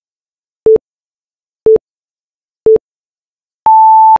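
Countdown-leader beeps: three short, low electronic beeps a second apart, then a longer, higher beep about an octave up, marking zero near the end.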